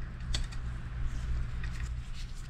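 A 4 mm Allen wrench turning a screw to fasten a water bottle cage to a bicycle's accessory mount: a few small, sharp metallic clicks and ticks over a low steady hum.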